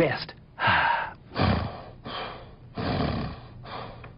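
A voice gasping and breathing heavily: about four loud, breathy puffs, roughly a second apart.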